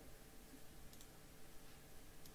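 Near silence: room tone, with a faint computer mouse click about a second in.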